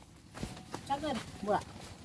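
Short snatches of a person's voice, two brief syllables, with a single sharp knock about half a second in.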